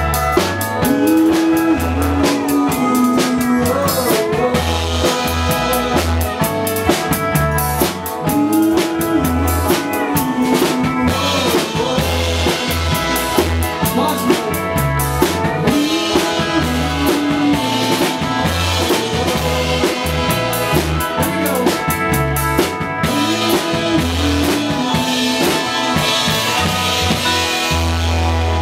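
A live country band playing: a drum kit with kick, snare and rimshots, under a short melodic phrase that repeats about every three and a half seconds.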